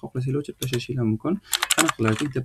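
Typing on a computer keyboard: a quick burst of keystrokes about a second and a half in.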